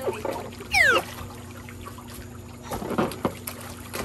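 Pool water sloshing and splashing as a person clambers onto an inflatable swim ring, with a quick high squeal that falls sharply in pitch just before a second in.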